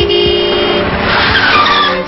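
A car horn sounds for under a second, then tyres screech as a car brakes hard in an emergency stop, over background music.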